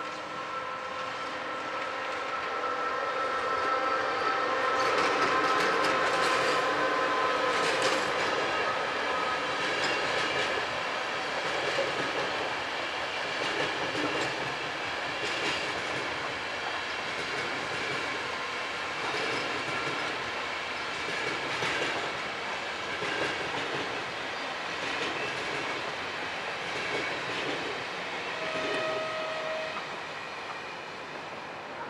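Locomotive-hauled passenger train passing on electrified track, the wheels of its coaches clattering over the rail joints. A steady whine from the locomotive over the first ten seconds or so, loudest around five seconds in, then the running noise of the coaches; a brief higher tone near the end.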